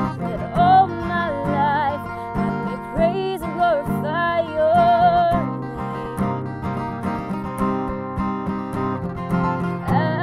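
A woman singing with vibrato over a strummed steel-string acoustic guitar. The voice holds long notes in the first half, then pauses around the middle, leaving the guitar, and comes back near the end.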